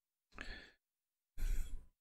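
A man breathing out audibly close to the microphone twice, like a sigh, the second breath louder.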